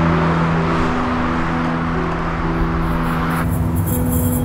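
Soundtrack music of sustained low notes over a steady rush of road traffic, with the traffic noise cutting off abruptly near the end.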